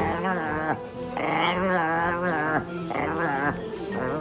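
Maltese dog muttering and grumbling contentedly while being petted. It makes about four drawn-out, wavering calls in a row, a sign that it is enjoying the stroking.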